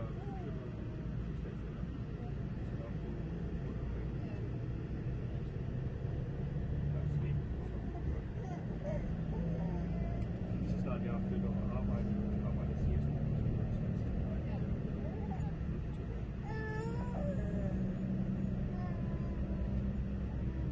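Engine and road rumble heard from inside a moving vehicle, its engine pitch rising a little as it picks up speed partway through, with faint voices in the background.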